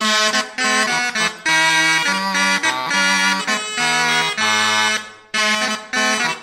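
A consort of cornamusen, capped double-reed Renaissance wind instruments, playing a tune in several parts together. There is a short break in the phrase about five seconds in before they play on.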